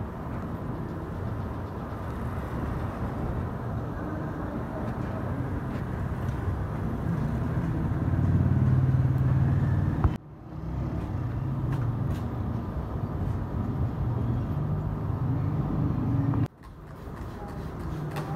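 Steady low mechanical rumble that drops out sharply about ten seconds in and again near the end, then resumes.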